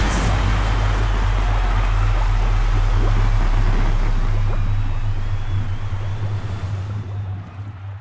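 Sound-effect rush of water over a deep steady rumble, fading out over the last three seconds.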